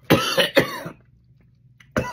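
A man coughing hard twice in quick succession, then again near the end, from the burn of a superhot chili pepper he has just eaten.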